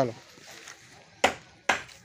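Chopped straw being handled in a plastic crate: a soft rustle with two sharp knocks about a second and a quarter and a second and three quarters in, as handfuls are put in and pressed down.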